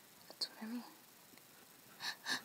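A person's faint, short whispered vocal sound about half a second in, a sharp hiss followed by a brief wavering voiced breath; low room noise otherwise.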